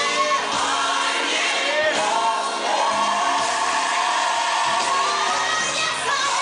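Choir singing a gospel song over musical accompaniment.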